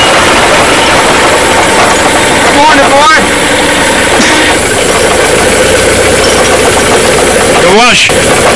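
Engine of an old vintage truck idling steadily, with voices over it.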